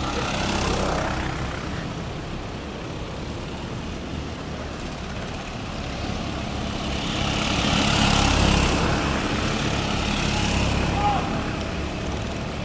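Go-kart engines droning on the track, swelling loudest as karts pass about two-thirds of the way through, then easing off.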